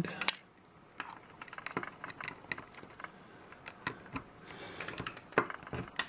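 Scattered light plastic clicks and taps from handling a micro-USB power cable and strings of plastic pixel nodes while plugging power into a Raspberry Pi, irregular and with no steady rhythm.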